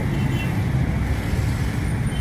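Steady outdoor background noise: an even low rumble with a hiss above it, without any distinct event.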